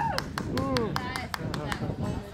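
Quick, fairly even hand claps, about five a second, with voices calling out over them.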